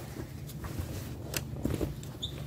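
Varsity jackets being shifted and rustled by hand in a pile, with a few faint clicks, over a steady low background hum.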